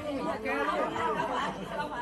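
Several people talking at once: indistinct, overlapping chatter of a small group of voices.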